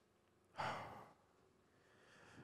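A single short sigh, a breath let out into a close microphone, about half a second in and fading away within half a second. The rest is near silence.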